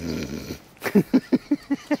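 A woman laughing: a low throaty laugh, then a quick run of short bursts of laughter, about six a second.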